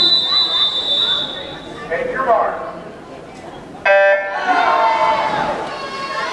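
Swim-meet start sequence: a long steady whistle blast calling the swimmers to the blocks, a short spoken command, then a short electronic start beep about four seconds in that starts the race. Voices follow the beep as the swimmers go in.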